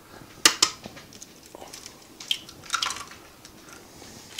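An egg being cracked and separated over a glass blender jar: two sharp clicks of shell about half a second in, then faint taps and drips as the yolk is worked free from the white.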